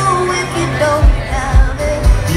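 Live band playing with a woman singing a held melody over a steady bass note, heard from the crowd. About a second in the bass drum comes in, beating about twice a second.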